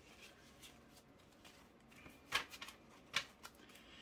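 Paper banknotes being handled and shuffled together into a stack: quiet at first, then a few short, crisp rustles and flicks of the bills in the second half.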